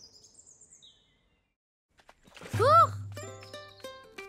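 Cartoon soundtrack: faint bird chirps, about a second of silence, then a short sound that rises and falls in pitch over a low hum, after which light background music with held notes comes in.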